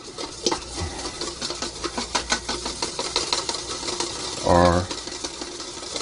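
A whisk beating a vinaigrette in a bowl as olive oil is drizzled in to emulsify it, making a quick, steady run of clicks against the bowl.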